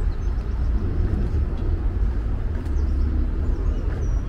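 Outdoor city ambience: a steady low rumble of distant traffic, with faint high bird chirps now and then.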